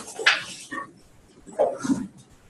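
Indistinct voices and short noisy sounds of people moving about in a classroom, with two louder bursts, one just after the start and one near the end.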